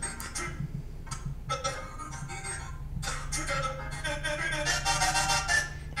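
A song's audio played back in choppy, broken snippets as a project timeline is skimmed with iMovie's audio skimming turned on.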